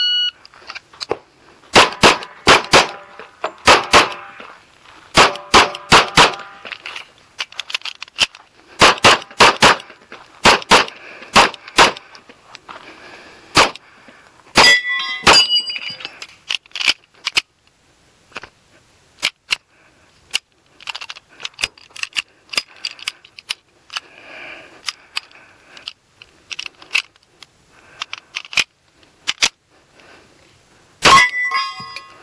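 A shot timer beeps, and a Kimber Custom II 1911 pistol in .45 ACP is fired in quick pairs and strings of shots. The shots come thick over the first half and more sparsely later on.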